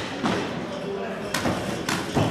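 Boxing gloves striking in an amateur bout: about three sharp slapping thuds, the second and third close together near the end, over the murmur of voices in a large hall.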